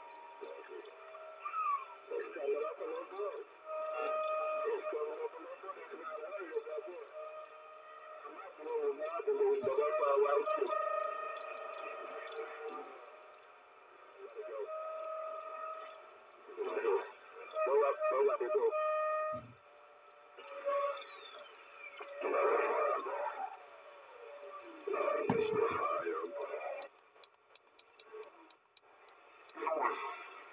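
Weak, distorted voices coming in over the CRT SS-9900 CB radio's speaker on AM around 27 MHz, too garbled to make out, with steady heterodyne whistles over them and one whistle falling in pitch past the middle. Crackling static in the last few seconds.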